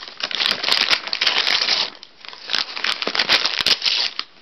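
A Manchester terrier tearing and chewing at gift wrapping paper, making crisp crackling and crinkling paper noise full of small clicks. It comes in two bouts with a short pause about halfway.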